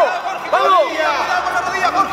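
Spectators shouting encouragement at a martial-arts bout, several voices calling over one another.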